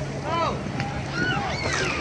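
Scattered voices of people on a beach calling out, short high-pitched calls here and there, over a steady low hum and a haze of wind and water noise.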